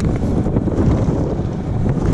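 Strong wind buffeting the microphone in 30 mph gusts, a steady loud rumble, over rough, choppy water.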